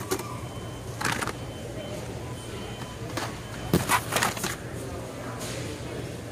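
Carded Hot Wheels blister packs, plastic bubbles on cardboard, being shuffled and flipped by hand in a bin. They rustle and clatter in several brief bursts over a steady low store hum.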